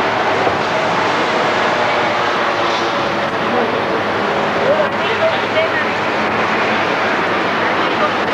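A steady, loud rushing roar of traffic or engine noise, with indistinct voices of people gathered around a car.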